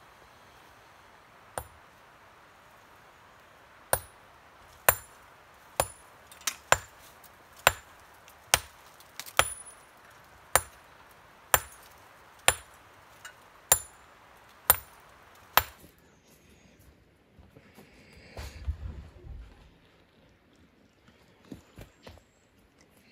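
Hand hammer blows striking stone in a thick masonry wall, each hit with a bright metallic ring, about one a second for some fourteen seconds while a window opening is broken through; the strikes stop a little before the end.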